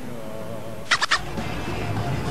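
A short shrill warbling squeal of three quick pulses about a second in, followed by background music with a low rumble.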